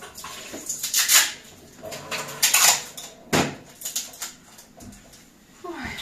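Packing tape being pulled off its roll in several short rasping bursts, with a sharp knock a little past three seconds in.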